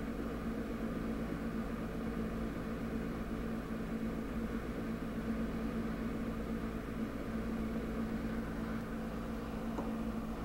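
Steady low hum with a faint hiss, with no change while the knob is turned.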